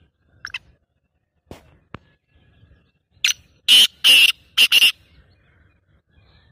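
A francolin (teetar) calling: a short note about three seconds in, then a quick run of loud, harsh calls lasting under two seconds. A faint chirp comes about half a second in.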